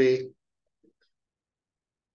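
A man's voice finishing a spoken word, then near silence.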